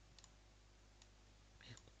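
Near silence with a few faint, sharp computer mouse clicks.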